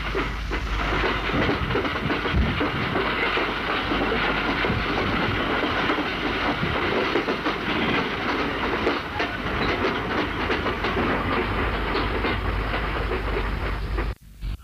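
A train sound effect in a radio play: a train running on the rails, with a continuous clatter of wheels and hissing noise, cutting off suddenly at the end.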